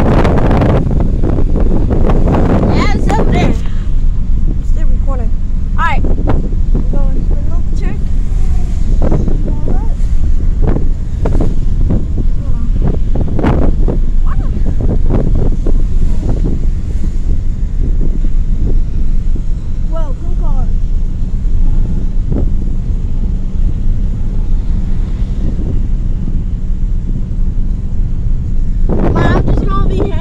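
Steady, loud low rumble inside a car, with wind buffeting the microphone and faint voices now and then.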